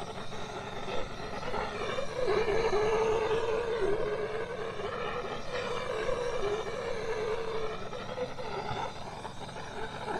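Handheld propane torch burning steadily with a wavering tone. It is heating the end of a plastic well downpipe to soften it for a barb fitting.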